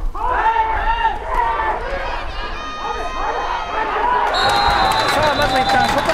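Players and sideline voices shout and cheer over one another during a football play. From about four seconds in comes a long, steady, high whistle blast: the official's whistle blowing the play dead after the tackle.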